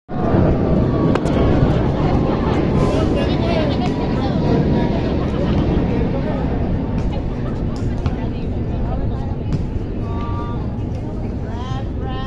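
Voices of volleyball players and bystanders chattering and calling out, over a steady low background noise, with a few sharp slaps of the volleyball being hit.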